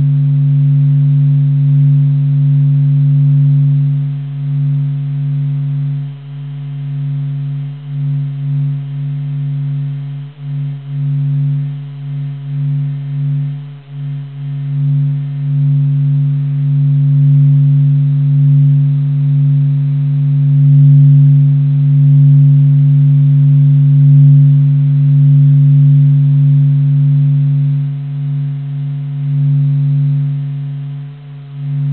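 Spacecraft measurements of the Sun converted to sound: a steady, deep hum with a fainter overtone above it. It wavers in loudness, dipping several times in the middle before swelling back.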